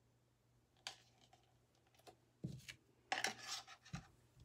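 Red plastic paint cups being handled and set down on a table: a light click, a knock, a short scraping rustle about three seconds in, and a thump at the end.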